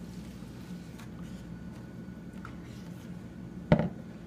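Water poured from a plastic watering can onto the potting soil of a snake plant, a faint trickle over a steady low room hum. A short, loud thump near the end.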